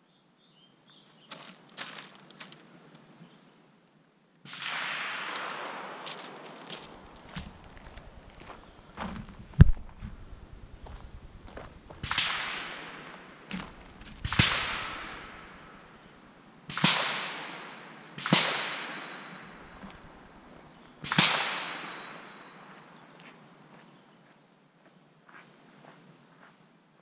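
A series of rifle gunshots, about six over some twenty seconds at irregular spacing, each a sharp crack that trails off in an echo over a second or two. There is a single louder, sharper knock about ten seconds in. Faint handling noises come before the shots.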